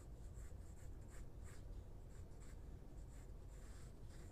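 Pencil drawing on sketchpad paper: a run of short, faint strokes, about three a second.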